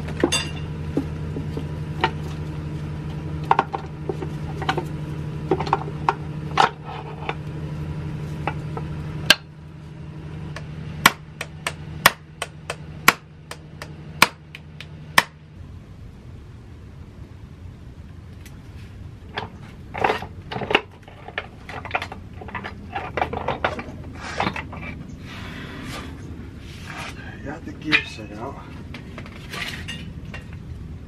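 Steel transmission parts of a T5 manual gearbox clinking, tapping and knocking as the gearbox is taken apart by hand. A steady low mechanical hum runs under the first half and stops about halfway through.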